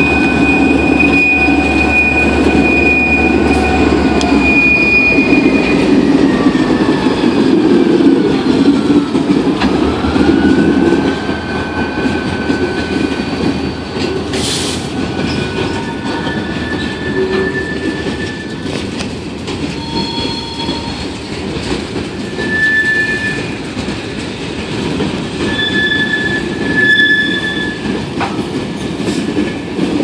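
An EMD GP38-2 diesel locomotive rolls past close by, its deep engine rumble strong for the first few seconds and a high whine sliding down in pitch as it moves away. Then a string of covered hopper cars rolls by with a steady rumble of steel wheels on rail and short, high wheel squeals coming and going.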